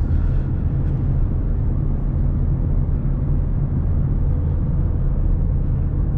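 2016 Ford Mustang EcoBoost's 2.3-litre turbocharged four-cylinder cruising steadily in fourth gear, heard inside the cabin as a steady low engine drone with tyre and road noise.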